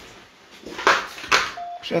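A man's voice speaking a few words in the second half, in a small room, after a quieter stretch of room noise.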